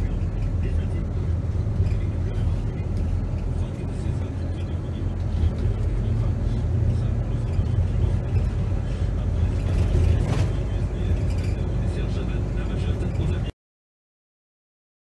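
Cabin sound of a moving bus: a steady low rumble of engine and road noise, with indistinct voices in the background. It cuts off abruptly near the end.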